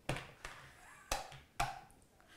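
Hard plastic clicks and knocks, four in about two seconds, as the lid and motor top of a small electric food chopper are pushed and twisted onto its bowl without locking into place.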